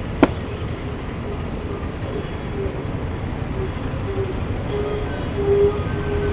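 A single sharp boot stamp from a marching soldier just after the start. It is followed by a series of pitched notes, short at first and then longer and louder, over steady outdoor rumble.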